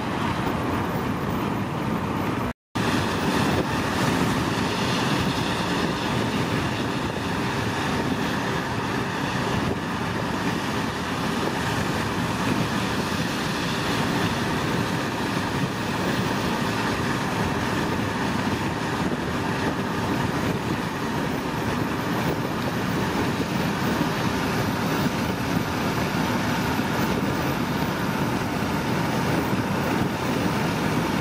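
Steady running noise of a moving vehicle heard from on board, engine and road rumble without a break except a brief dropout about two and a half seconds in.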